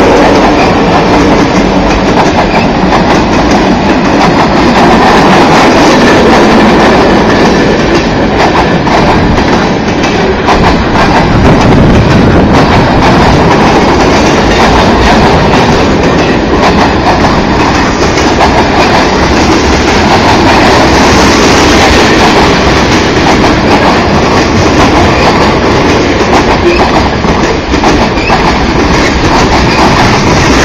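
Freight train cars rolling past at close range, steel wheels on the rails making a loud, steady noise throughout, with a trailing diesel locomotive passing at the start.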